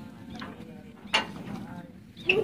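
Faint murmur of men's voices in the background, with one brief, sharp sound a little over a second in.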